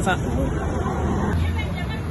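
Busy street background: a babble of voices over a steady low traffic rumble, with the sound changing abruptly about a second and a half in as one outdoor recording gives way to another.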